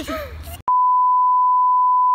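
A steady 1 kHz test-tone beep, the reference tone that goes with TV colour bars, starting abruptly under a second in and holding one flat pitch for about a second and a half.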